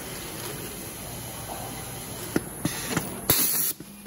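Advanced Poly T-375 table-top poly bagger running a seal-and-drop cycle: a low steady machine hum, then a short loud hiss of air about three seconds in, lasting about half a second.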